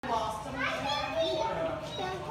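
Children's voices chattering and calling out over one another, the words indistinct.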